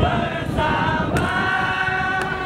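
A group of voices singing held notes together in a choir-like chant, with a few percussive strikes underneath.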